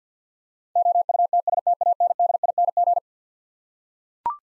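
Morse code sent at 50 words per minute as a single-pitched beep tone, a rapid run of dots and dashes starting just under a second in and stopping about three seconds in: the repeat sending of the word "outstanding".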